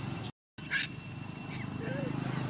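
Outdoor ambience: a steady low rumble with a faint steady high tone, broken by a sudden dropout to silence about a third of a second in. Near the end come a couple of short high squeaks.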